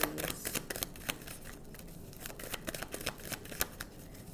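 A tarot deck being shuffled by hand: a fast, irregular run of sharp card clicks and flicks.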